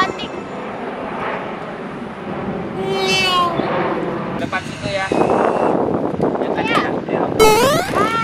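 Passenger jet flying overhead, a steady rumble that swells about five seconds in. A child's high voice sounds briefly about three seconds in, and another voice rises near the end.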